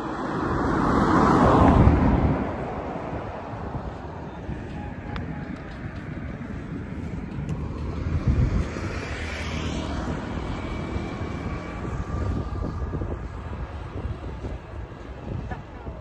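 Road traffic passing close by: a car's tyre and engine noise swells to a peak about two seconds in and fades, then another vehicle passes with a falling pitch around eight to ten seconds in, over a steady traffic rumble.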